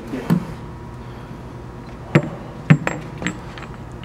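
Steel taper tool holders and a drill chuck knocking and clinking against each other as they are handled and fitted together. There are a handful of sharp metal clicks, the loudest about two seconds in and again a little later.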